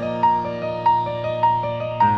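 Slow piano music playing a repeating figure: a high note comes back about every 0.6 seconds over held low notes.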